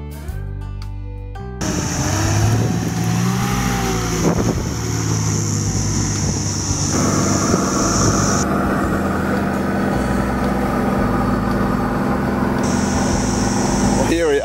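Nissan Patrol 4WD driving on beach sand, heard from inside the cab: the engine running under continuous road noise. The engine's pitch rises and falls in the first few seconds, then holds steady.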